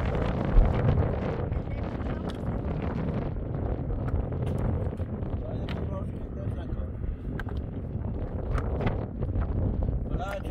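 Wind buffeting the microphone, with a few sharp clicks of loose stones knocking together as they are lifted and stacked onto a dry-stone wall.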